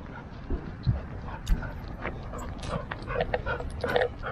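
A dog whimpering faintly with a toy in its mouth, over scattered low thumps of footsteps.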